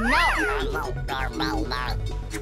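Cartoon creature's squealing cries, a quick run of short calls that each rise and fall in pitch, the first the loudest, over background music.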